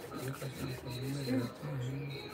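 A man's low, quiet voice, mumbling in several short stretches without clear words.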